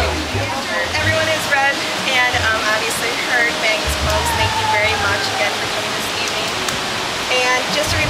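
Crowd chatter: many people talking at once, over a steady rushing noise.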